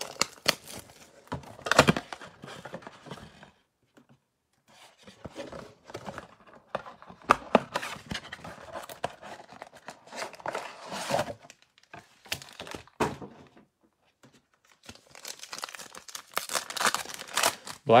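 Crinkling and tearing of a trading-card blaster box and its plastic-wrapped card packs as they are opened by hand, in irregular bursts with two short pauses.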